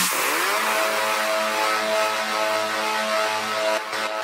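Psytrance breakdown with the kick and bass dropped out. A held synth chord starts with a crash-like wash, its tones gliding down and settling, then holds steady over a hiss of noise.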